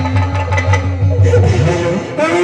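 Live stage music with a fast, low drum beat of about five beats a second and instrument tones above it; the beat stops near the end.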